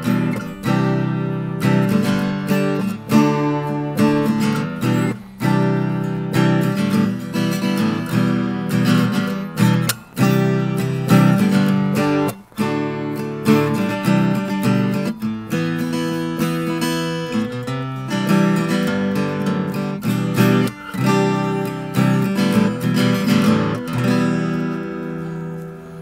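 Traveler Redlands Concert acoustic guitar, spruce top with mahogany back and sides, strummed unplugged: a run of ringing chords with a very warm sound, fading out on the last chord near the end.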